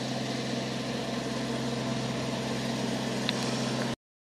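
A steady low machine hum with an even hiss above it, cutting off abruptly just before the end.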